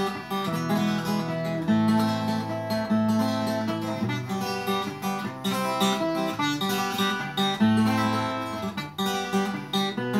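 Twelve-string Takamine acoustic guitar strummed, with a new chord every second or two over ringing bass notes.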